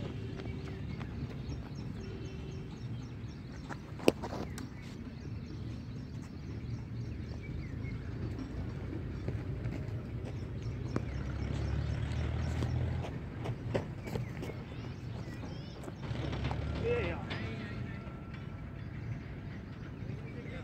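Wind rumbling on the microphone outdoors, with faint distant shouts from players and one sharp knock about four seconds in.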